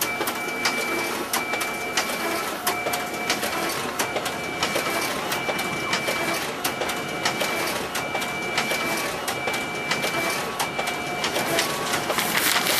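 Photocopier making a run of copies: a short whine and clicks repeating about once a second as each sheet goes through.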